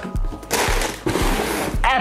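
Rustle of tissue paper and a cardboard shoebox lid as the box is closed, over background music with a steady beat. A man's voice starts right at the end.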